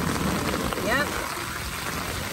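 Steady rain falling, with a brief human voice about a second in.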